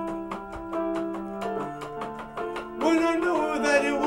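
Casio electronic keyboard playing held chords over a quick, steady beat. A man's singing voice comes in about three seconds in, louder than the keyboard.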